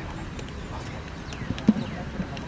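Scattered light hand slaps and claps from players shaking hands and slapping palms, over outdoor ambience, with one sharper slap near the end.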